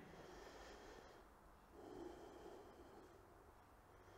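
Near silence with a couple of faint, easy breaths from a person holding a yoga pose.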